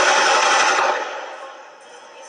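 A loud gunshot-like bang that rings on and fades away over about a second.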